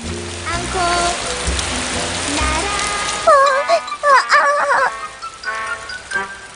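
Rain sound effect, a steady hiss, over background music. About three seconds in, a short high pitched phrase comes in, bending up and down.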